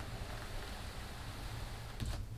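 Large cardboard box sliding across carpet and rug as it is pushed, a steady low scraping rustle.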